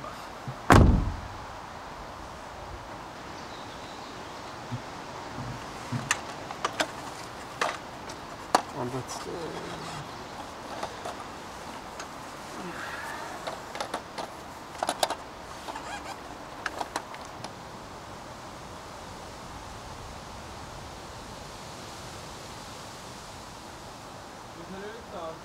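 A single heavy thump about a second in, then scattered sharp clicks and knocks over a steady low hiss.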